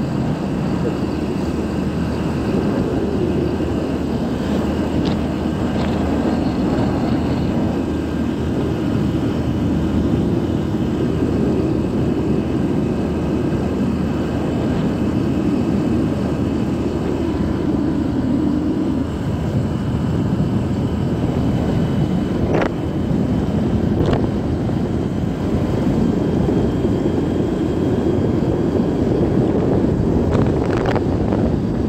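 Motorcycle running steadily at cruising speed, its engine drone mixed with a constant rush of wind and road noise from riding.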